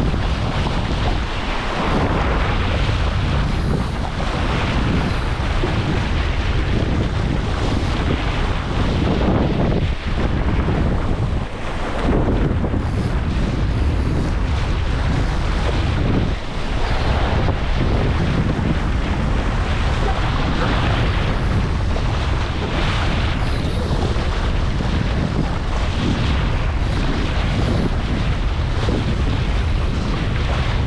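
Wind buffeting the microphone in a steady loud rumble, over water rushing and splashing along the hull of a Laser dinghy sailing at speed.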